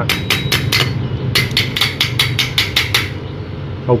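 Steel pliers tapping repeatedly on a fresh stick-welded aluminium bead on an aluminium fan blade: a quick run of four sharp metallic taps, a short pause, then about nine more at roughly five a second, each with a light ring. The tapping tests whether the aluminium weld has fused; it holds.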